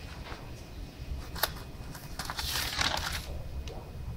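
Paper rustling as spiral-notebook pages are handled, with a sharp click about a second and a half in and a louder rustle near the three-second mark, over a low rumble of handling noise on the microphone.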